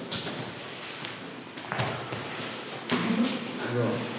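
A few scattered thuds and knocks of feet landing and stepping on a chipboard floor in an echoing hall as several people swing their legs up in kicks, with faint voices near the end.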